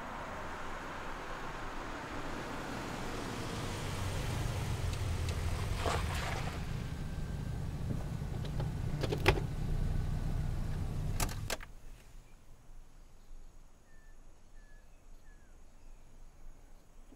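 A Toyota sedan drives slowly over a dirt track with a low engine rumble, and its tyres crunch on the ground. A few sharp clicks and knocks follow. The engine is switched off about eleven seconds in and stops suddenly, leaving only a few faint chirps.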